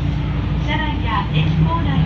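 Subway train running with a steady low rumble, under an on-board station announcement voice.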